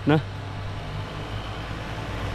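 Steady low engine drone with road and wind noise, heard from a vehicle cruising along a paved road. A single short spoken word cuts in right at the start.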